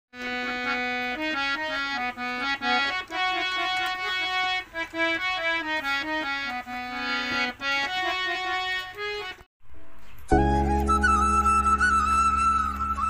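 Hand-pumped harmonium played as a melody of changing reed notes and chords for about nine seconds, then stopping abruptly. After a short break, other music starts near the end: a steady low drone under a wavering high melody line.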